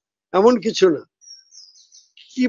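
A faint, high, wavering chirp from a small bird in the background, starting just after a second in, once a man's voice has stopped.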